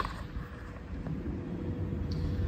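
Low, steady outdoor background rumble with a faint steady hum running through it.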